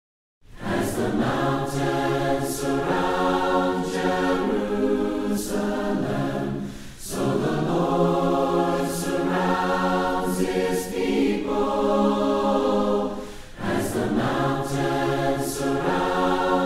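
A choir singing a hymn a cappella, in phrases of about six seconds with short breaks between them.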